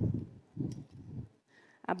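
Portable folding work table being unfolded: low, muffled handling knocks and scrapes in three short bursts over the first second or so, then quiet.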